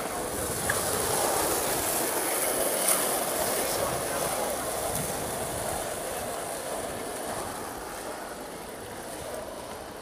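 Town street ambience: the noise of a passing vehicle swells over the first second or so, then slowly fades, with faint voices.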